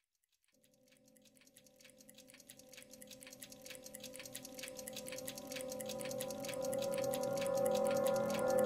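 Ambient music fading in from silence: a steady sustained tone with a fast, even pulsing above it, growing steadily louder.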